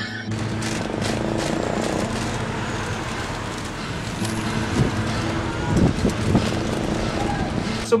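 Outdoor street ambience: a steady hum of road traffic, with faint, indistinct voices of passers-by showing through around the middle.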